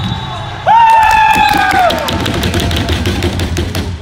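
A loud wordless shout from a person, held on one high note for about a second and falling off at the end, with sharp knocks and clicks around it. Under it runs the noise of play in an echoing indoor hall.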